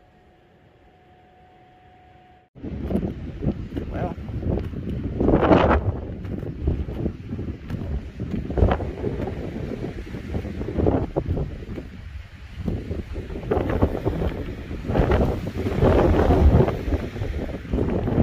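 Wind buffeting the microphone outdoors in repeated gusts that swell and fade, starting abruptly a couple of seconds in. Before it, quiet room tone with a faint steady hum.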